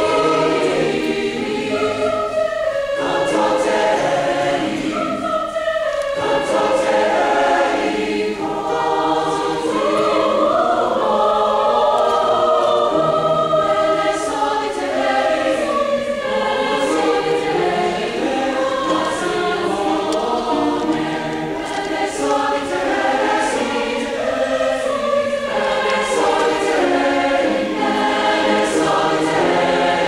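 Large mixed choir singing together, with short breaks between phrases about three and six seconds in.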